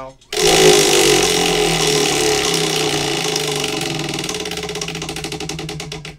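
Large pegged prize wheel spun by hand: its pegs rattle rapidly past the pointer, starting suddenly about a third of a second in, then the clicks gradually spread apart and fade as the wheel slows down.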